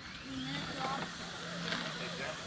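Electric motor and gearbox of a radio-controlled crawler truck driving, a steady low whine that sets in about half a second in.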